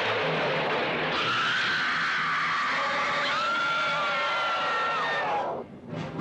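Shrill screeching over a loud, dense wash of noise, with several high cries that bend and one long held cry in the middle; the din cuts off abruptly shortly before the end.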